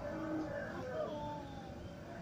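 Faint, distant voices over low background noise.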